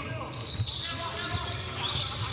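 Basketball being dribbled on a hardwood court: a few dull bounces in a large, echoing hall.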